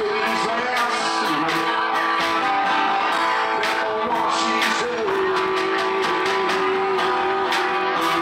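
Live acoustic guitar strummed over a steady beat of snare drum and cymbal hit with sticks.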